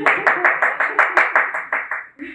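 Brief burst of hand clapping, sharp claps about six a second, fading near the end.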